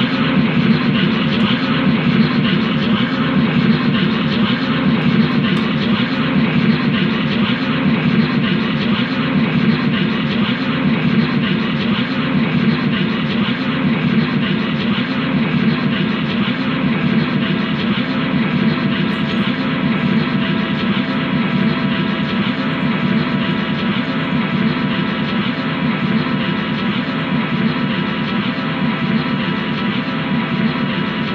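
Loud, unbroken drone of amplified noise from a guitar amplifier: a dense wall of sound with many held tones and a heavy low hum, easing slightly toward the end.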